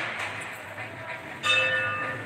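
A metal bell struck once about a second and a half in, its several ringing tones dying away slowly.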